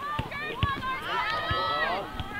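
Indistinct voices shouting across a camogie pitch during play, with a long drawn-out call in the second half, and a few short low thumps.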